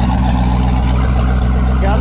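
Twin-turbocharged LS V8 engine of a vintage Winnebago motorhome idling steadily, just after a cold start.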